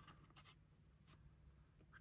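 Near silence: room tone, with a few faint ticks of plastic model parts being handled.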